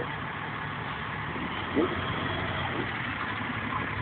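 Steady street traffic noise with a low engine rumble, the background of a city street.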